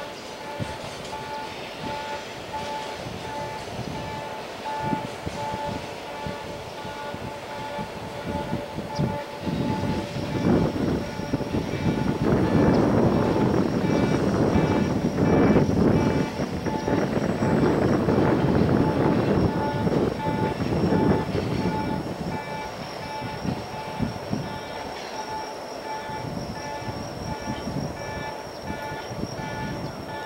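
Wheels of a container freight train clattering over rail joints as the train pulls away, the rhythmic rumble swelling for several seconds in the middle and then fading. A steady pulsing tone repeats evenly underneath.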